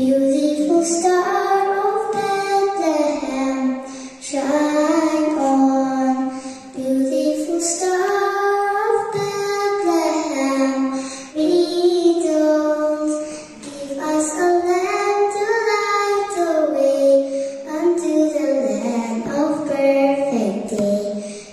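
A young girl singing a Christmas song solo into a microphone: one melody line of held notes in phrases a few seconds long, each followed by a short breath pause.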